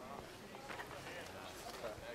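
Faint, indistinct voices of people talking in the background, over light outdoor noise.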